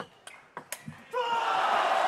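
Table tennis ball clicking off bats and table in the last strokes of a rally. About a second in, loud shouting and crowd cheering break out as the point is won.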